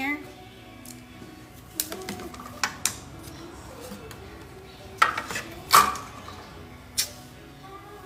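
Painting tools and palette containers being handled, giving about six sharp clinks and knocks of hard objects set down and moved. The loudest come around the fifth and sixth seconds.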